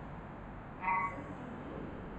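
A single short, high-pitched squeak about a second in from a whiteboard marker being written with, over faint room noise.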